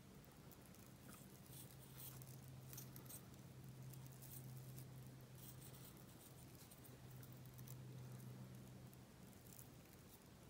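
Near silence: faint rustling and crinkling of crepe paper as a fringed strip is wound tightly around a wire, with small scattered ticks of the paper. A steady low hum runs underneath.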